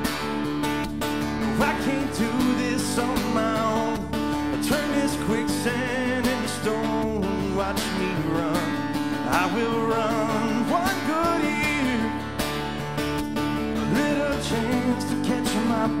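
Live country band playing an instrumental break: acoustic guitar strumming under a wavering melodic lead line, with a steady beat.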